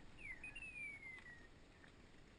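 Faint thin whistle gliding downward in pitch twice: a short note, then a longer one lasting about a second.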